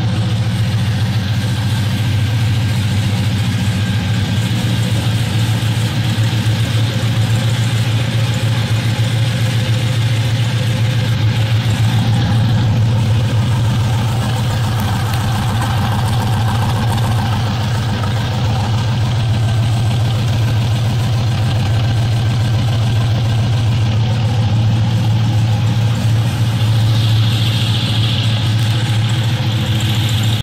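GM LS1 5.7-litre V8, freshly swapped into a Datsun 240Z and on its first run, idling steadily with no revving.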